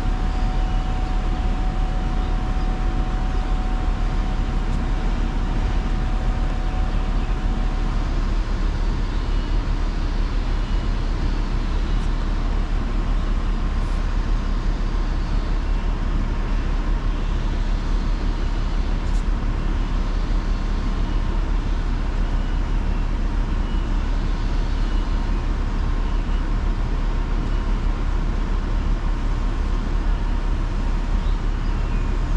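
Grove mobile crane's diesel engine running steadily while it holds a heavy load, with a faint whine that stops about eight seconds in.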